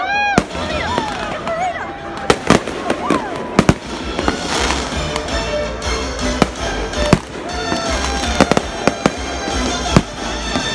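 Aerial fireworks bursting overhead: about a dozen sharp bangs at irregular intervals, several in quick pairs, over a low rumble, with the voices of the watching crowd.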